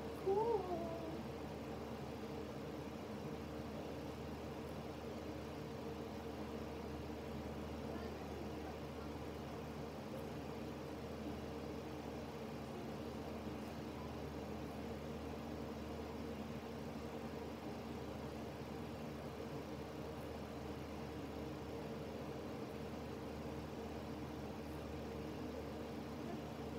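A steady low hum made of several constant tones, with a brief sliding high call about half a second in.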